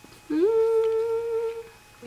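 A woman humming one held note with closed lips, sliding up into it at the start and holding it steady for over a second.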